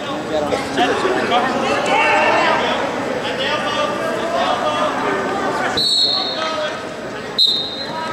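Wrestling referee's whistle, two short, steady high blasts about a second and a half apart, over voices echoing in a gym.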